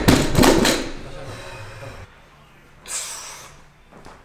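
A 160 kg barbell loaded with rubber bumper plates landing on a rubber gym floor after a deadlift set: a quick run of heavy thuds and clanks as it bounces and settles, dying away within the first second. A short hiss-like noise comes about three seconds in.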